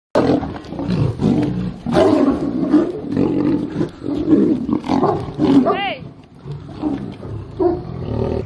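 A tiger and a lion snarling and roaring as they fight, in loud, irregular, overlapping bursts. A short high-pitched cry rises and falls about six seconds in.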